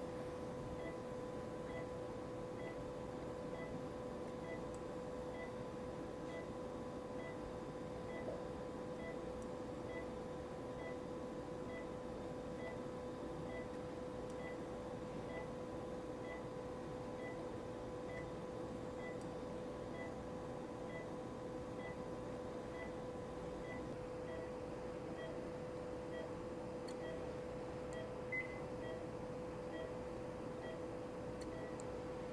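Operating-room patient monitor giving its pulse beep, faint short tones repeating evenly about one and a half times a second, over a steady electrical hum. A single small click sounds near the end.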